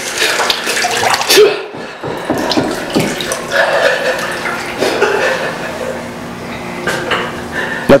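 Water running and churning in a hydrotherapy whirlpool tub, with a steady low hum from its turbine, while a man laughs.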